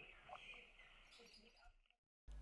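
Near silence: faint room tone between speakers, falling to total silence at an edit cut.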